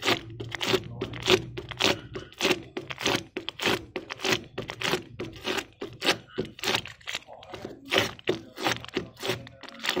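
Rubbing and scraping against a plastic car headlamp lens to work off sticky tint-film glue residue: quick, uneven strokes, about two to three a second.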